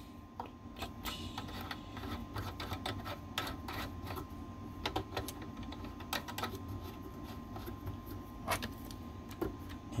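Small irregular metallic clicks and scrapes of threaded coax connectors being screwed together by hand: a PL-259 to SO-239 right-angle adapter's coupling nut threading onto a connector port. They sound over a low steady hum.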